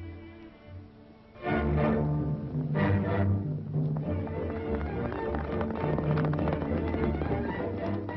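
Orchestral film-score music led by bowed strings, soft at first and coming in loud about a second and a half in.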